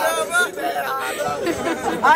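Voices of a small crowd talking and calling out over one another.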